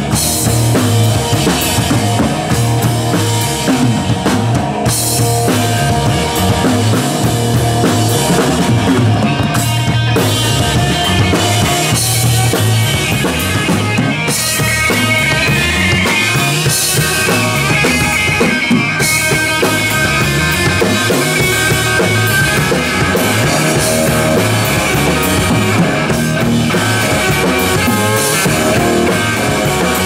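Live rock band playing: electric guitar through a Marshall amp over bass guitar and a drum kit.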